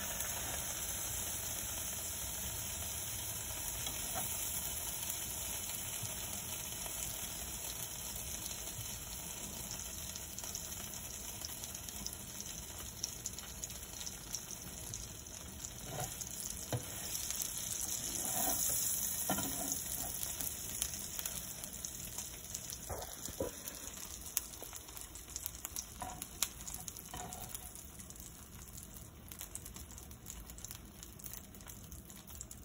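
Grilled cheese sandwich frying in margarine in a nonstick pan: a steady sizzling hiss with scattered small pops. A few light knocks come in the second half, and the sizzle quietens near the end.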